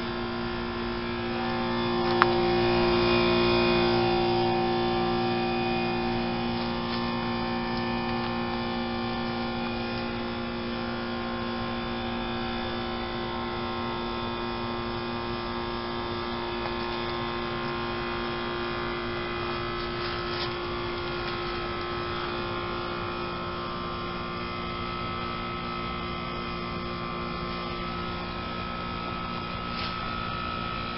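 Outdoor heat pump unit running with a steady low hum, swelling louder for a few seconds near the start.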